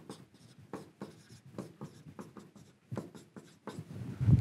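Marker pen writing on a whiteboard: a series of short, irregular scratching strokes as letters are written.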